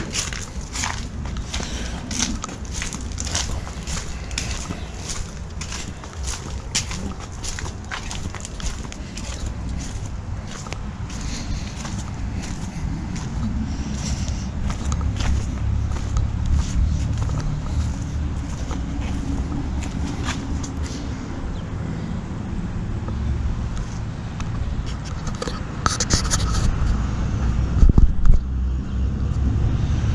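Footsteps at a steady walking pace on a concrete walk strewn with leaves and yard debris, each step a short sharp scuff. Under them a low rumble on the microphone that grows stronger in the second half, with a few louder bursts near the end.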